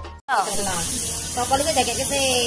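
Music stops at an edit. A steady high hiss follows, with faint voices under it.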